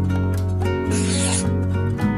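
Background music with a steady bass line, and about a second in a short scratchy pen-scribble sound effect lasting about half a second.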